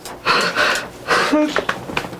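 A man crying, overcome with emotion: two sharp, gasping breaths with a short choked vocal sob between them.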